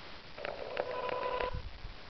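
A steady electronic tone lasting about a second, with faint clicks in it.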